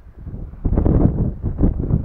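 Wind buffeting the camera's microphone in irregular low rumbling gusts, growing much louder a little over half a second in.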